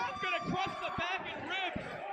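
Audio from a pro wrestling match: raised voices with about three dull thuds, roughly half a second apart, typical of bodies hitting the ring canvas.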